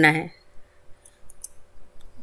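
A few faint, dry clicks from a wooden spatula moving roasted chana dal, urad dal and peanuts in a nonstick kadai, over a faint steady hum.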